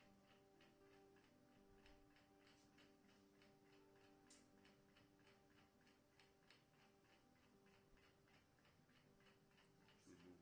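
Near silence with a faint, even ticking, about four ticks a second, over faint held tones.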